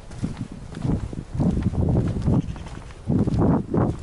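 Footsteps and rustling of someone walking through tall dry grass while carrying the camera, heard as irregular low thuds that are loudest in two spells in the middle and near the end.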